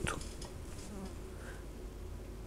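Faint steady low hum of background room noise, with nothing else sounding.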